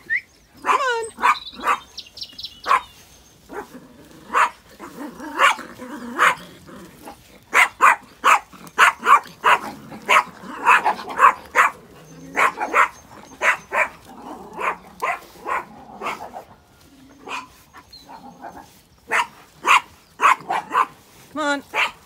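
Small sheepdog yapping repeatedly in short, sharp, high-pitched barks, coming in quick runs with brief lulls between them.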